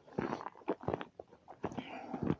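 Footsteps crunching over frozen, dry pasture grass: a run of short, irregular crunches.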